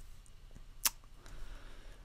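A single sharp computer mouse click about a second in, over faint room tone.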